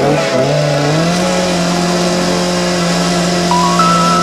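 Chainsaw engine revving up over the first second, then held at a steady high speed as the saw blocks out a salmon shape from a wooden slab.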